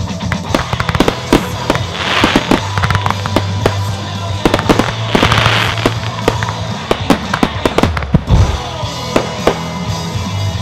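Fireworks going off in quick succession over loud music: many sharp bangs, two spells of hiss about two and five seconds in, and a deep boom just after eight seconds.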